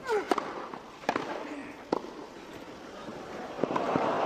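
Tennis ball struck by rackets in a serve and rally on grass: sharp pops roughly a second apart.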